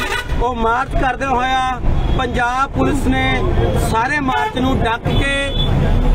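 A man shouting loudly in short, rising and falling phrases, over the low rumble of a vehicle.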